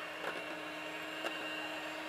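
Electric hand mixer running steadily with a level motor hum, its beaters whipping a cream mixture in a stainless steel bowl, with a couple of faint ticks.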